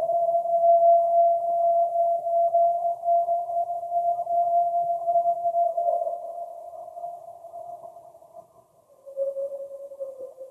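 Field-recording playback of a person's long howl, held at one steady pitch for about eight seconds with a slight dip before it fades. A shorter, lower howl begins about nine seconds in. The recording sounds narrow and muffled.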